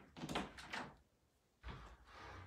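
A quick run of knocks and rattles in the first second, then a single dull thump near the end.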